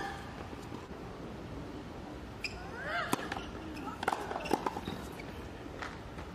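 A few sharp, scattered knocks of a tennis ball on a hard court, with a brief squeak near the middle, over a quiet court background.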